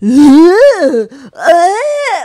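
A woman's loud vocal impression of a crazed ape: two long calls that rise in pitch and then fall, the second starting about halfway through.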